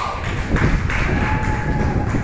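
Irregular soft thumps and taps, with a faint steady tone held through the second half.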